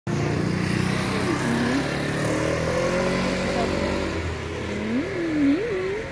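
A motor vehicle's engine running close by, with a woman's wordless voice sliding up and down in pitch, loudest near the end.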